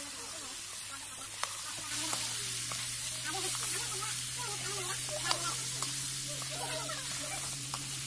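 Chopped tomatoes and vegetables sizzling in a black iron kadai while a long spoon stirs them, the spoon scraping and clicking now and then against the pan.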